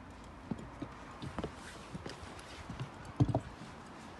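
Footsteps on wooden decking: scattered hollow knocks on the boards, with a louder cluster of knocks a little after three seconds in.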